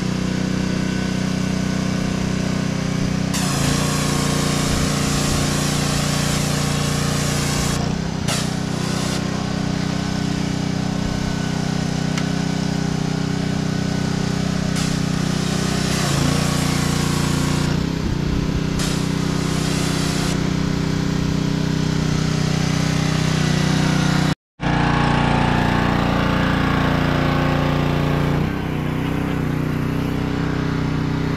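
Gas-engine pressure washer running steadily, with the hiss of the spray coming and going as the wand's trigger is pulled and released; the engine note dips briefly several times as the load changes. The sound cuts out for a moment about three-quarters of the way through, then carries on.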